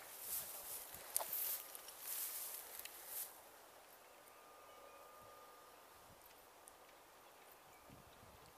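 Footsteps swishing and rustling through long meadow grass, with a few light clicks, for about the first three seconds; then the sound drops away to a faint outdoor background.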